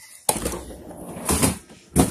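Refrigerator door being pulled open: a rough rustling noise starting suddenly, swelling once, then a short sharp click near the end.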